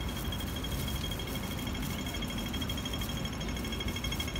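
Pedestrian crossing's audible signal pipping rapidly with a high-pitched beep, the fast rhythm that tells pedestrians to cross while the green man is lit. Low rumble of wind and traffic underneath.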